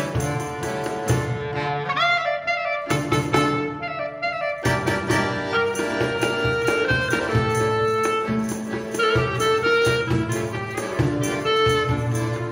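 Klezmer band playing a tune live, with clarinet, violin, cello and accordion together. About two seconds in the lower parts drop out briefly under a rising high line, then the full band comes back in.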